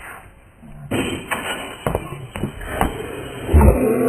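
A basketball slammed through a metal chain net, the chains clattering about a second in, followed by several sharp knocks of the ball and feet on the court and a heavy thud. A short shout starts near the end.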